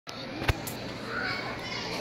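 Children's voices chattering in an echoing auditorium, with a sharp click about half a second in.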